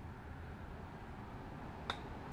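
One sharp click of a diamond-faced PureSpin wedge striking a golf ball on a short chip, near the end, over faint outdoor background.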